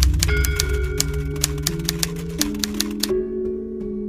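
Typewriter key clicks, rapid and irregular, stopping about three seconds in, over slow background music with a low drone and bell-like tones.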